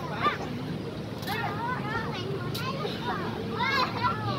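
Children's high-pitched voices, squealing and calling out in short rising and falling cries as they play, over a steady low background hum.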